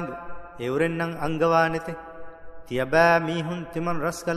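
A man chanting a Quran verse in Arabic in melodic recitation style, with long held notes in two phrases separated by a short breath.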